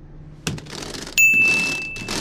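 A single bright bell ding, struck just past a second in and ringing on as it slowly fades, between bursts of hissing noise.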